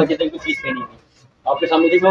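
A man's voice talking, breaking off for about half a second in the middle before carrying on.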